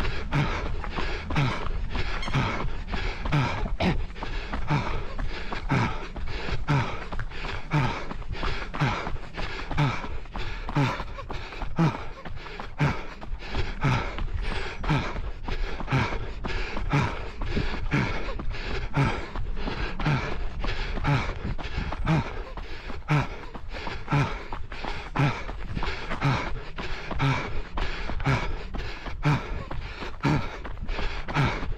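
Running footfalls on a treadmill belt in a steady, fast rhythm of about three strides a second, over the low steady hum of the treadmill, with the runner breathing hard late in a 5 km run.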